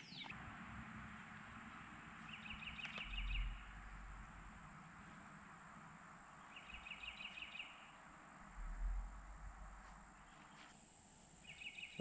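An animal's short trilled call, a rapid run of pulses repeated three times about four seconds apart, over faint outdoor background noise, with two brief low rumbles.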